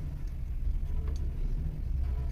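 Steady low background rumble with a faint click about a second in.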